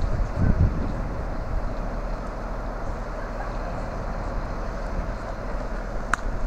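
Steady diesel rumble of a stationary Class 43 HST power car standing at the platform, with a brief low surge about half a second in.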